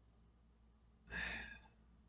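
A man's short audible sigh about a second in, lasting about half a second; otherwise near silence.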